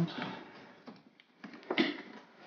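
A few light clicks and knocks of small parts being handled by hand, with one sharper click near the end.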